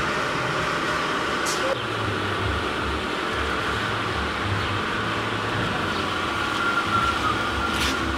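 Steady background hum and hiss with a low, uneven throb underneath and two faint clicks, one early and one near the end.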